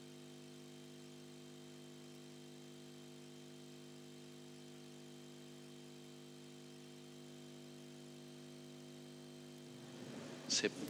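Near silence with a faint, steady electrical hum of several pitches from the chamber's microphone and sound system.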